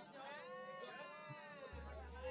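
A faint human voice over the sound system, drawn out and wavering up and down in pitch. A deep low hum comes in near the end.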